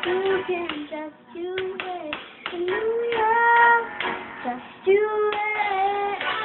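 A young girl singing solo, holding long notes about three seconds in and again near the end. Sharp taps or claps come in the first half.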